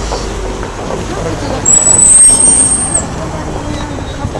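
A high-pitched brake squeal lasting a little over a second, about halfway through, over road traffic and the chatter of a crowd.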